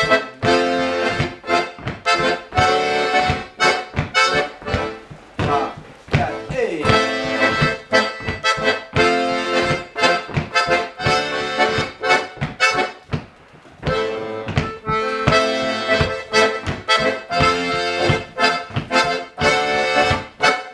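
Diatonic button accordion playing a lilting hanterdro dance tune, the right hand carrying the melody over a left-hand accompaniment of broken chords in a steady, even rhythm, with a brief break about two-thirds of the way through.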